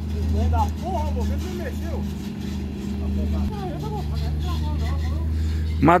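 Heavy truck's diesel engine running steadily in a low drone, its note changing about halfway through.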